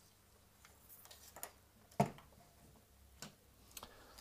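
Faint clicks and one sharper knock about two seconds in: handling noise from a small aluminium-extrusion model machine being turned and set aside on a table.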